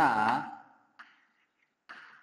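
A man's drawn-out voice trailing off in the first half-second, its pitch dipping and rising again, then chalk on a blackboard: a light tap about a second in and faint scratching, with another tap near the end.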